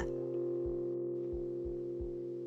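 Ambient background drone music of several steady held tones, in the style of crystal singing bowls.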